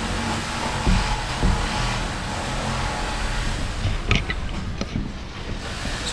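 A steady mechanical drone, with a couple of short knocks about one and one and a half seconds in as the hardwood timbers are handled.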